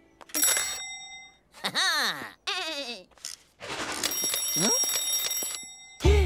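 A cartoon twin-bell alarm clock ringing in a short burst, then again for about a second and a half near the end. Between the rings come two falling, wobbly squeaks.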